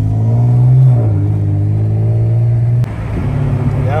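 Car engine heard from inside the cabin while driving. Its pitch climbs as it accelerates over the first second and holds, then the engine eases off and gets quieter about three seconds in.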